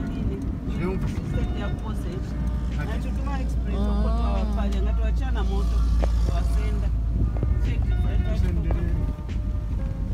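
Car driving, its engine and road noise a steady low rumble heard inside the cabin, with music and voices over it.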